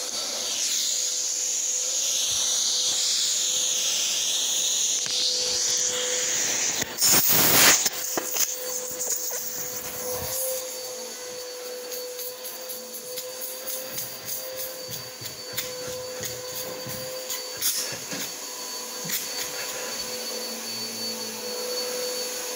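Vacuum suction of a portable carpet extractor with a vacuum booster, drawing air through the open end of its 125-foot hose: a steady whine with hiss and no loss of suction. A loud rush of air comes about seven seconds in, and later a hand is held over the hose end, with scattered clicks.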